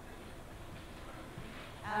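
Quiet room tone of a hall, a low steady background with no distinct sound in it. A woman starts speaking right at the end.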